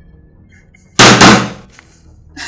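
A loud, sudden bang about a second in: two sharp hits close together, fading within half a second.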